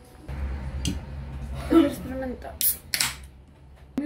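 Faint talk in a room over a steady low hum, with a short click about a second in and two brief hisses near the end.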